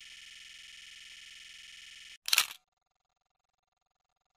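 Channel logo intro sound effect: a faint high hiss trailing on from a whoosh, then a single short, sharp click a little past two seconds in.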